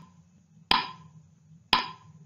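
Countdown timer sound effect ticking once a second: two sharp clicks a second apart, each followed by a brief ringing tone.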